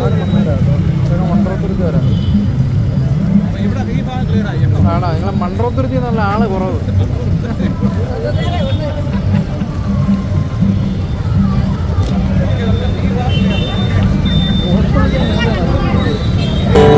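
Busy street during a procession: many voices, running vehicle engines and music playing, all together at a steady loud level.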